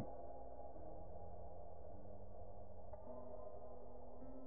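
Quiet ambient background music: sustained low, droning notes that shift to new pitches a few times.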